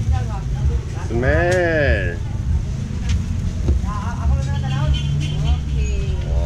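Steady low rumble of road traffic with people's voices over it; one voice rises and falls in a drawn-out sound about a second in.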